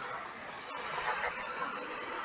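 Steady hiss of an online video call's audio line, with a brief dropout about three quarters of a second in.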